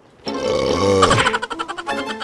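A person lets out a long, low burp with a wavering pitch after drinking from a water bottle. About a second in, light plucked comedic music comes in.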